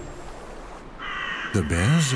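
A crow-family bird calling with a harsh cry that starts about halfway in. A man's narration begins near the end.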